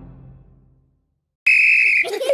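The last notes of the cartoon's closing music die away, then after a brief silence a police whistle sounds one loud, steady blast, starting about three-quarters of the way in.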